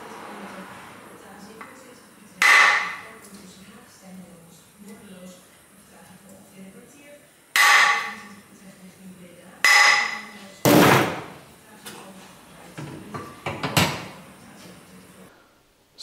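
Heavy copper hammer striking the built-up crankshaft of a 1979 Ducati 900 Mike Hailwood Replica to true its alignment. There are four hard blows with a ringing metallic tone, spaced a few seconds apart, then several lighter strikes near the end.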